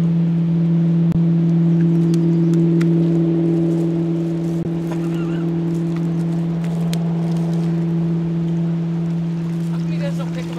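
A motorboat engine drones steadily at a constant pitch, slowly fading toward the end.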